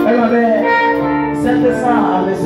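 Live worship band music over a PA, with held keyboard chords and a man's voice through a microphone on top.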